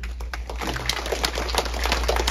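Audience applauding: a dense, irregular patter of hand claps.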